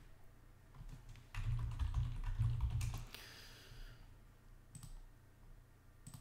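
Typing on a computer keyboard while logging in, with a run of keystrokes from about a second in to about three seconds in, then a few quieter scattered taps.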